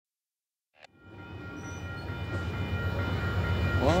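Low rumble of an approaching Amtrak train, growing steadily louder, after a short click about a second in.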